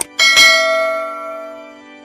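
A mouse click, then a bell struck once, ringing out and fading over about a second and a half. It is the notification-bell sound effect of a subscribe-button animation.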